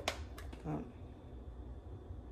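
Two light, sharp clicks in quick succession from a plastic spice shaker being handled and opened over a blender jar, then a faint steady low hum.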